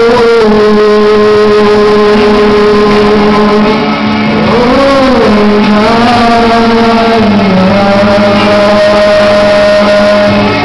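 A man singing through a microphone over backing music, holding long sustained notes, with a brief swoop in pitch about five seconds in before another long held note.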